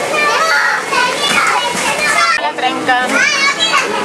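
Many young children's voices shouting and calling over one another at play, with high rising squeals.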